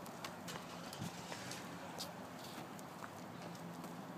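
Quiet outdoor background: a faint steady hum with scattered, irregular light ticks.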